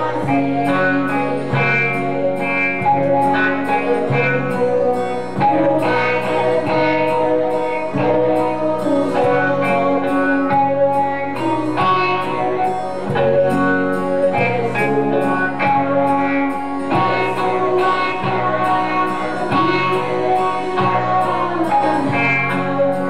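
A woman singing into a microphone over a steady strummed guitar accompaniment.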